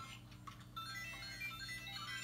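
LEGO Mario interactive figure's small speaker playing its electronic course music, a faint beeping tune of short, high notes stepping between pitches.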